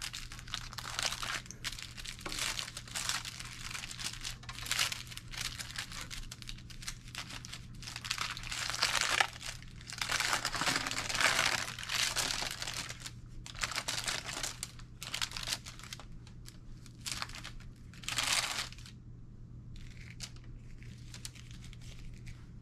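Paper wrapper of a sterile glove pack crinkling and rustling in irregular bursts as it is peeled open and unfolded, dying away about three-quarters of the way through.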